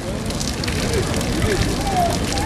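Fountain water spraying and splashing in a steady rush, with people's voices faint in the background.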